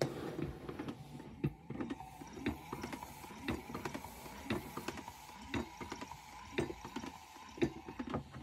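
Small DIY machine running: a brushed DC gearmotor cranking a pneumatic cylinder's rod back and forth, with a steady motor whine and a knock about once a second on each stroke.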